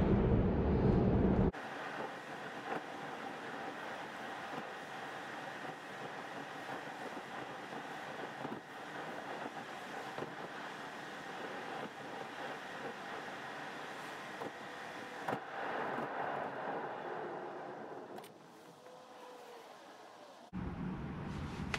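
Steady road and tyre noise inside the cabin of a Tesla electric car while it drives, with no engine sound. It grows quieter near the end as the car slows in traffic.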